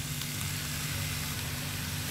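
Marinated chicken and chopped onions sizzling in hot oil in a nonstick wok over a high gas flame, a steady frying hiss over a steady low hum.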